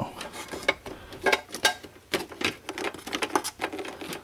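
Irregular clicks and small rattles of a ribbon cable and plastic connectors being handled inside a computer case, several sharp clicks a second.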